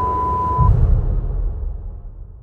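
A steady 1 kHz test-tone beep of the kind played with colour bars, cutting off suddenly under a second in. Beneath it are a deep low rumble with a swell about half a second in, and music that fades away.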